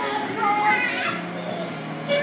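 High-pitched children's voices calling out, loudest from about half a second to one second in, over background music.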